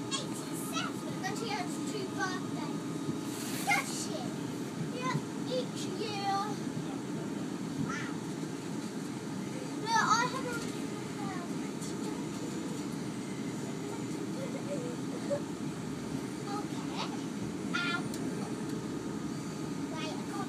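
Steady running rumble of a Class 450 Desiro electric multiple unit heard from inside the carriage, with children's voices chattering on and off over it and one louder shout about halfway.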